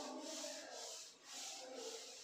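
Repeated rubbing or scraping strokes on a surface, about two a second, fairly faint.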